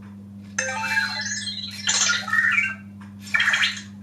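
Anki Vector robot making happy electronic chirps and warbling beeps in three short bursts, starting about half a second in, about two seconds in and about three and a half seconds in: its response to being praised as a good robot. A steady low hum runs underneath.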